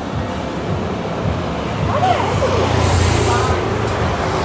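Street traffic: a motor vehicle's engine passes close by, swelling in loudness with a rising hiss about two to three and a half seconds in, over a steady background of road noise and faint voices.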